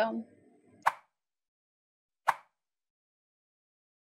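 Two short, sharp clicks about a second and a half apart.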